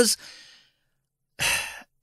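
The end of a spoken word fading out, a short pause, then one audible breath drawn in by a speaker about one and a half seconds in, just before talking resumes.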